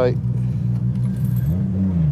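Nissan Skyline GT-R R33's RB26DETT twin-turbo straight-six idling, heard from inside the cabin, its note rising about one and a half seconds in as the car pulls away.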